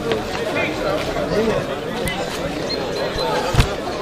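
Several people's voices talking over one another in a small gathering, with no clear words, and one sharp thump about three and a half seconds in.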